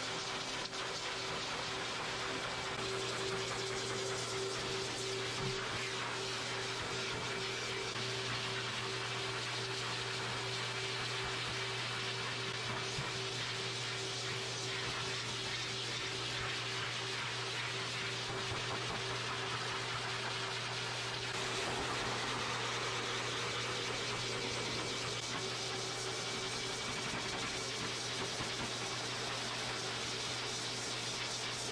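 High-velocity pet dryer blowing air through its hose: a steady rush of air over a constant motor hum, a little louder from about two-thirds of the way in.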